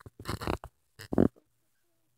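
Two short effort grunts from a person straining at a task, the second louder, about a second in.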